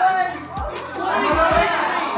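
A group of people talking and calling out over one another, with a few short low thumps.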